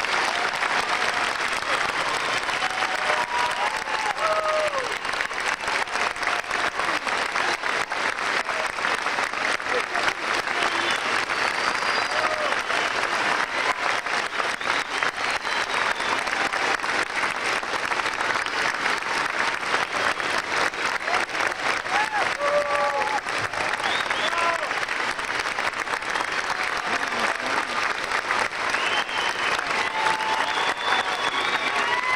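Sustained audience applause, many hands clapping steadily after an orchestra performance, with voices calling out here and there through it.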